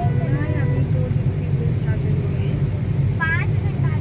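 Steady low road and engine rumble inside a moving car's cabin, with faint passenger voices in the background.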